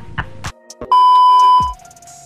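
A man's laughter tails off, then about a second in a loud, steady electronic beep at one pitch sounds for just under a second: a dubbed-in sound effect.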